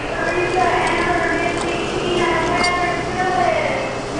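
Claw machine's electronic tune while the claw is in play: sustained tones stepping from note to note, with a slow falling glide near the end.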